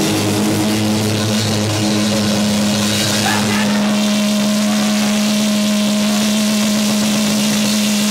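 Live rock band's amplified instruments ringing out at the end of a song in a loud, steady low drone over a wash of cymbal and room noise. A voice shouts briefly about three seconds in.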